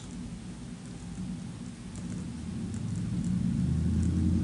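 Low rumbling noise that grows steadily louder toward the end, with a few faint scratches of a pen writing on paper.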